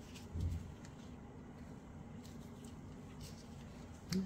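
Quiet room tone with faint handling sounds: a soft low bump about half a second in, then a few light ticks.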